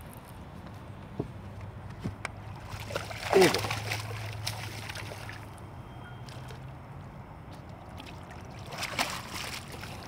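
A hooked largemouth bass thrashing at the surface beside the boat, with faint water sloshing and splashing. A low steady hum runs until about seven seconds in, and a brief vocal exclamation comes about three and a half seconds in.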